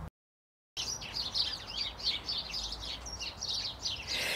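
After a moment of dead silence at the start, small garden birds chirping and singing, with many short high calls overlapping in quick succession.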